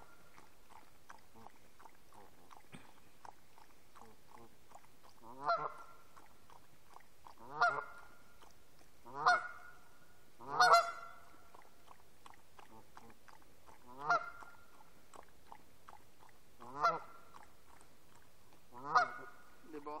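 Canada geese honking: about seven single honks at uneven gaps of one to three seconds, the first some five seconds in.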